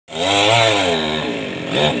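A chainsaw running high up in a tree. Its pitch rises then falls over the first second, and it settles to a lower, steadier run.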